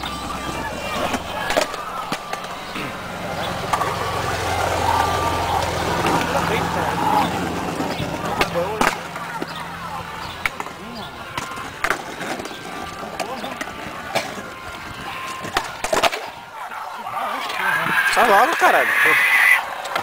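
Skateboard wheels rolling slowly over a stone-paved sidewalk, a steady rough noise broken by several sharp clacks of the board. A louder wavering sound comes in near the end.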